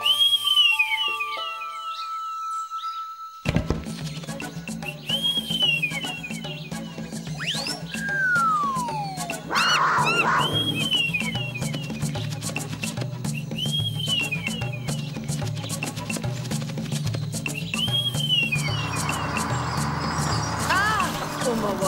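Held high whistle notes blown on a mushroom-shaped pipe, a call to the forest animals, with repeated arching bird-like chirps. About three and a half seconds in, cartoon background music with a steady low beat starts and the chirps carry on over it; a falling whistle glide comes about eight seconds in.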